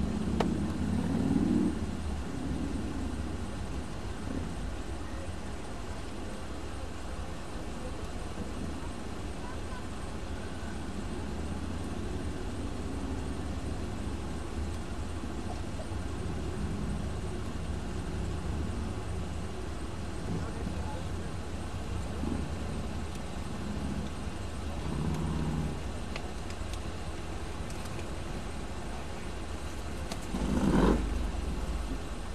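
Steady low rumble of road traffic and engines, briefly louder about a second in.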